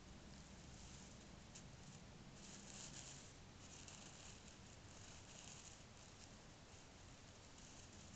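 Near silence: a faint hiss, with soft rustling a few times around the middle.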